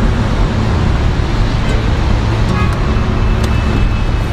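A car driving along a road: steady road and engine noise with a deep rumble.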